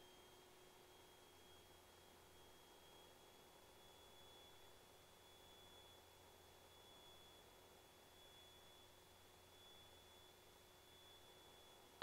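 Near silence, with only a faint steady high tone and a fainter low hum.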